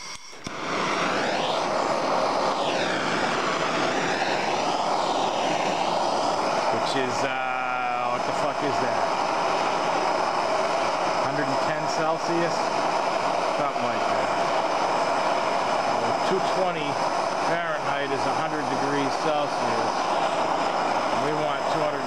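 MAPP gas hand torch burning with a steady, loud hiss, starting about half a second in. The flame is heating the rear brake disc bolts to break down the thread-locker on them.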